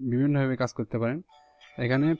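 A man talking for about the first second, then, about halfway through, a faint ringing chime of a few steady held tones starts up and carries on under his voice as he resumes.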